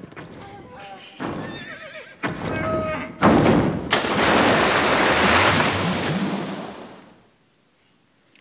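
Film soundtrack: shrill, warbling whinny-like calls, then a loud rushing noise that comes in about three seconds in and fades out shortly before the end.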